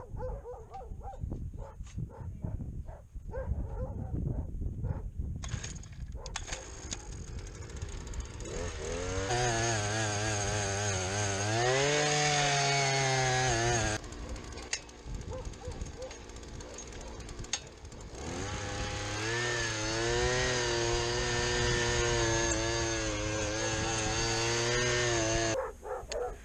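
Small gas engine of a one-man earth auger running at speed as the bit bores into dry, hard ground. The engine note climbs and holds under load, drops back for a few seconds, then runs steadily again.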